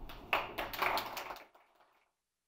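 Audience clapping, a quick run of sharp claps that cuts off suddenly about a second and a half in.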